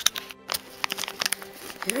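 Clear plastic bag crinkling in the hands as it is handled, in scattered short crackles, with a throat clear near the end.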